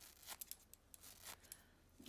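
Faint rustling and tearing of Shetland wool fibres as hands pull a lock of fleece apart at the rise, heard as a few soft, irregular crackles.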